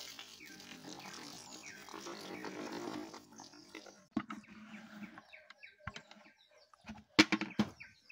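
Water and cut pieces of produce pouring from a pot into a plastic colander, the water running through the mesh. Then a few scattered knocks as the last pieces drop and the pot is shaken out, louder near the end.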